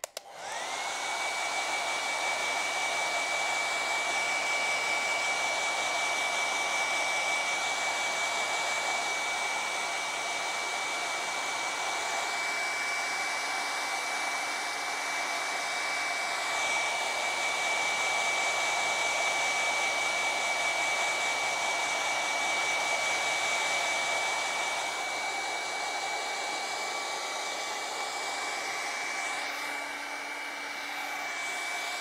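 Hair dryer switching on, its whine rising as the motor spins up, then running steadily with a single high whine over the rush of air. It is blowing on a freshly painted acrylic canvas to dry it.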